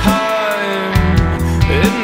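Grunge rock song played by a band: electric guitar, bass guitar and drums, with a held melodic line over a steady beat.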